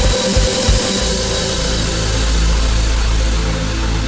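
Uplifting trance music: the four-on-the-floor kick drum drops out about a second in, leaving a held low bass note under sustained synth pads.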